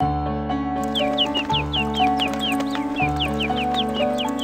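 Light cartoon background music with held notes and a bass line that changes every second and a half or so. From about a second in, short high chirps that slide downward, like birds tweeting, repeat several times a second over it.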